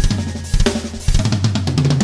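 Rock music with a drum kit playing: kick drum, snare and cymbals, opening on a loud hit.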